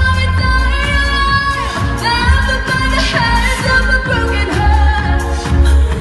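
Pop song with a woman singing the melody over a heavy, pulsing bass beat, played loud over a PA.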